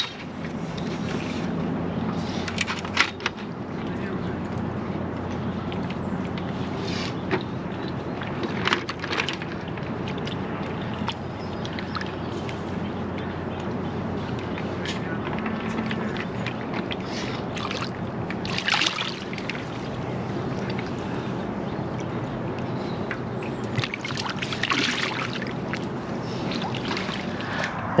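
Water sloshing around a wading angler as he sets a metal-legged fishing platform into the shallows, with a few brief louder splashes, over a steady low hum.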